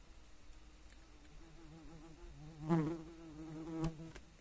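A flying insect buzzing close past the microphone, its low drone wavering and swelling loudest a little past the middle. A sharp click just before the end.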